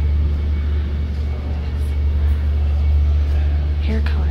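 A loud, steady low hum or rumble that does not change.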